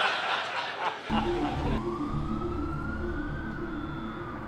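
Laughter for about a second. Then, after a cut, a low rumble with a single slow wailing tone that rises and then falls back, like a distant siren.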